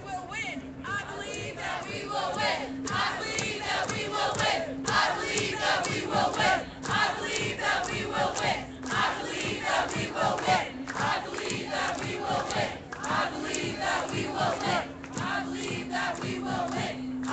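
A crowd of protesters chanting a slogan in unison, the shouted phrase repeating about every two seconds.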